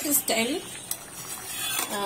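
Steel ladle stirring thick tomato chutney in a stainless steel pan, scraping the pan and clinking against it a few times.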